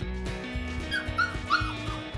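Dubbed dog sound effect: three short high whimpers about a second in, from a puppy in pain, over light background music.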